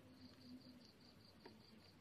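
Faint cricket chirping: a steady train of short, high pulses, about five a second, over near-silent background, with a soft tap about three-quarters of the way through.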